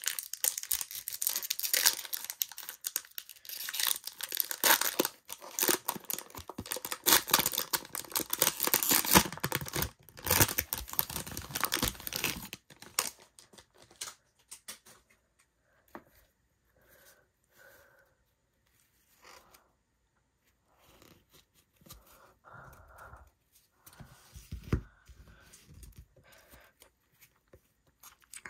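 A plastic baseball card pack wrapper being torn open slowly, crackling and crinkling for about the first half, then only faint, scattered rustles and taps as the cards are handled.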